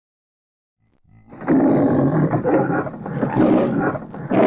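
A lion's roar for a parody of the MGM lion logo, starting about a second in and running as two long, loud roars with a short dip between.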